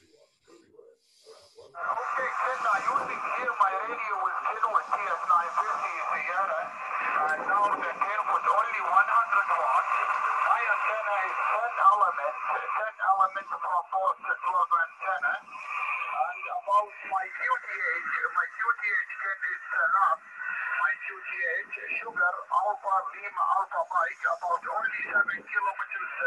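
Voices coming from an amateur radio transceiver's speaker, thin and narrow-band as over a radio link, starting about two seconds in and running on almost without pause.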